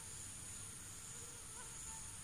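Faint, wavering whine of a mosquito's wings, over a steady high-pitched hiss.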